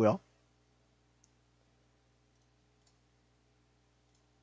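The tail of a spoken word, then a quiet room with a steady low electrical hum and a few faint, short computer clicks: one about a second in and a couple more near the end.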